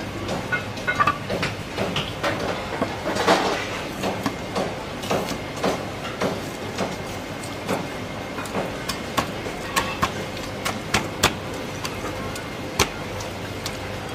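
Irregular sharp knocks and clatter from a fishmonger working with a cleaver, a large fish and steel trays on a wooden chopping block, over a steady background din.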